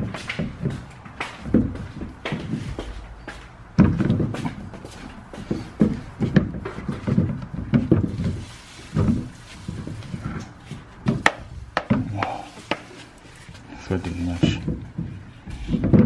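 Plastic sump of a GE whole-house water filter housing being twisted by hand back onto its head, with repeated short clicks, knocks and scraping as the threads are lined up.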